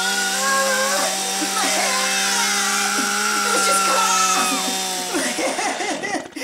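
A chainsaw runs at a steady pitch as its bar cuts across the top of a pumpkin, then stops shortly before the end.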